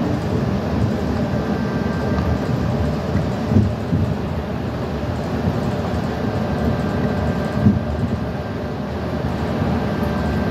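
Inside a moving shuttle bus: steady engine and road rumble, with two brief knocks, one about a third of the way in and one near three quarters.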